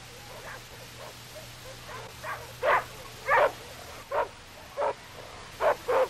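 A dog barking repeatedly: about six short barks, spaced half a second to a second apart, starting about two seconds in, over a low steady hum.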